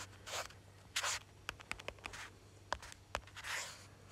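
Fingers working a phone's touchscreen: a few faint, sharp taps among soft rubbing swishes.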